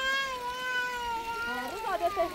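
A young child crying in one long, high wail that falls slightly in pitch, followed near the end by short, wavering voice sounds.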